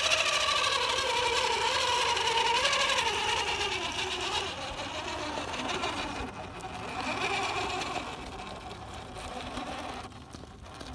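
Electric motor and gear drivetrain of a Redcat Gen8 Axe RC rock crawler whining under throttle as it climbs, the pitch wavering and sliding with the throttle. Louder for the first few seconds, then quieter as the truck eases off.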